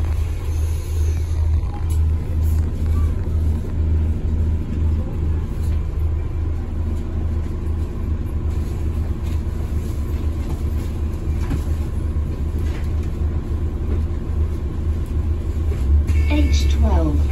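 Alexander Dennis Enviro400 MMC double-decker bus on the move, heard from inside the passenger cabin: a steady, loud low rumble of engine and road noise.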